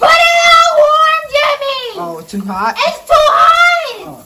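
A woman singing loudly in a high voice in a tiled shower, holding long wavering notes, with a lower, quieter phrase about two seconds in before a last high note.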